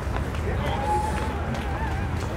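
Outdoor street ambience: people's voices talking among the crowd over a steady low rumble.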